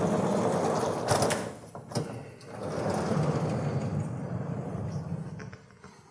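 Sliding lecture-hall blackboard panels moved along their rails, with a rolling, grinding sound in two long pushes: one of about a second and a half, then after a short pause one of about three seconds.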